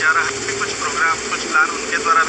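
Voices talking, over a steady hum that fades out partway through.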